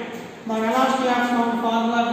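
Only speech: a man talking, after a brief pause at the start.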